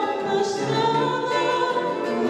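Cape Verdean morna performed live: a woman singing in held notes, accompanied by piano and cavaquinho, with choir voices singing along.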